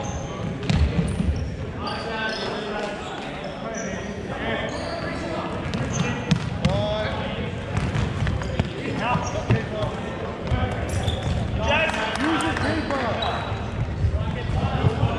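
Indoor soccer being played on a wooden hall floor: the ball is struck and bounces with sharp knocks, shoes give short high squeaks, and players shout to each other several times.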